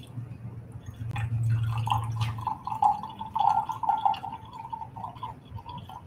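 Water poured from a plastic jug into a glass beaker, a trickling, filling stream that starts about a second in and runs for about four and a half seconds.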